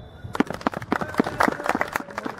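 A small group of people clapping their hands, an irregular run of sharp claps starting about a third of a second in.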